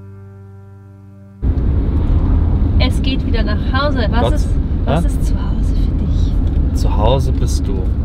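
Soft background music fading, cut off about a second and a half in by the steady low rumble of a car's cabin while driving. A voice comes in over the rumble a few times in short bits.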